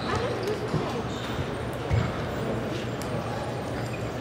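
Table tennis ball knocking a few times off bats and table, with the loudest knock about two seconds in, over the indistinct murmur of spectators in a large hall.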